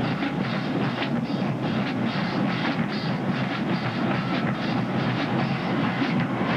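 Marching band drumline playing a percussion-only break: rapid snare and drum strikes over a dense low drum sound, with no horns.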